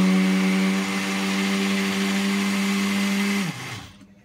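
A 500-watt countertop blender motor running steadily, blending a frozen-fruit smoothie in a glass jug. It is switched off about three and a half seconds in and winds down to a stop.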